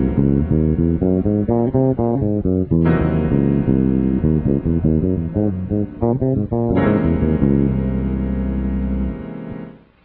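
Electric bass guitar playing quick scale runs up and down over a sustained keyboard chord that is struck again twice. The bass is playing the super Locrian scale over an altered dominant chord. The playing fades out just before the end.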